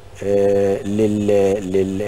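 A man's voice holding a long, drawn-out hesitation vowel ('aaah') at a level pitch, with a brief break near the middle.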